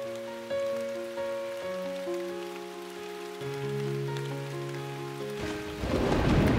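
Soft held music notes, changing in slow steps, over a faint rain sound effect. Near the end a loud rush of noise sets in: the start of a thunder rumble.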